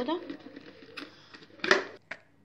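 A few faint clicks, then one short, sharp clatter near the end as minced garlic is emptied from a food processor bowl into a plastic tub.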